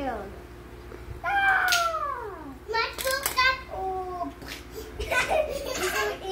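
A young child's whiny vocal cries: one long, high wail falling in pitch a little over a second in, then shorter cries and babble.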